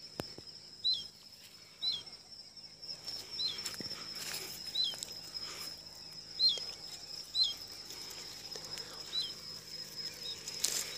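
A bird repeats a short call that hooks downward in pitch, about once a second, over a steady high-pitched insect drone. Leaves and twigs rustle as the branches are handled.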